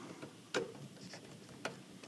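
A screwdriver tightening a screw on a range cord's metal strain-relief clamp: two faint, sharp clicks about a second apart.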